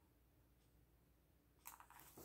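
Near silence: room tone, with a brief soft rustle of stickers and paper being handled on a journal page near the end.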